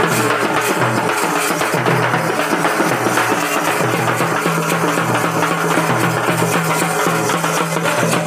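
Dappu frame drum beaten fast with a stick, among other festival percussion, over a steady low tone.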